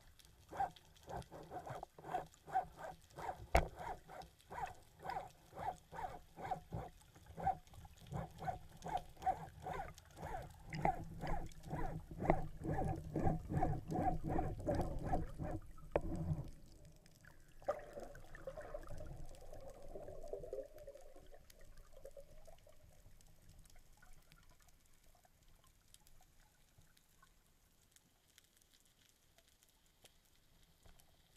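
Underwater sound of a freediver swimming, with a regular pulsing about twice a second and a low rush of water that grows stronger, stopping suddenly about 16 s in. A short swirl of water noise follows, then a faint steady underwater hum.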